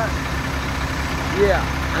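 Diesel engine of a 2008 Mack swab rig idling steadily.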